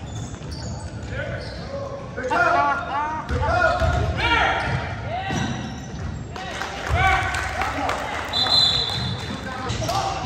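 Indoor basketball game: the ball bounces on a hardwood gym floor and sneakers squeak in short bursts as players move, with voices in the hall.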